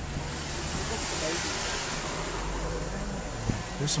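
Road-vehicle noise in slow traffic: a broad rushing sound that swells and eases over the first two seconds, with a low engine rumble growing stronger from about halfway.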